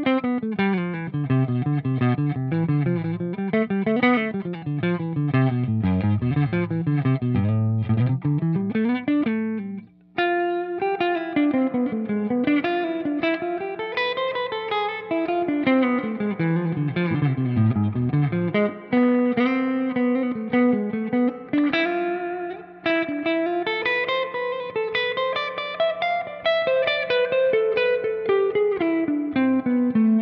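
Electric guitar played through a Boss RV-5 Digital Reverb pedal into a Marshall JCM800 2203 amp: fast picked runs that sweep up and down in pitch, with a short break about ten seconds in.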